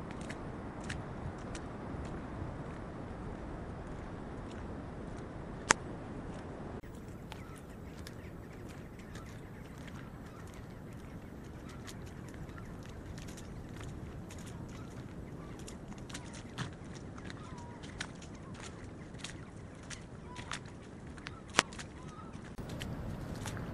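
Footsteps scuffing and clicking over wet rock and stones, over the steady wash of surf breaking offshore. Two sharp clicks stand out, one about six seconds in and one near the end, and a few faint short bird calls come in the second half.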